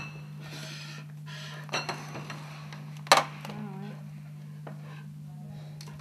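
Small clinks and taps of crockery and painting things handled on a table, with one sharper click about three seconds in. Paper rustles as a book's pages are turned near the start, over a steady low hum.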